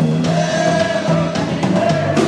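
Live rock band playing: a man singing long held notes over electric guitar and a drum kit.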